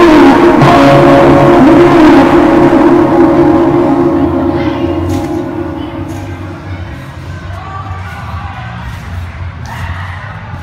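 Background music fading out over the first several seconds, leaving low hall ambience with a few sharp knocks.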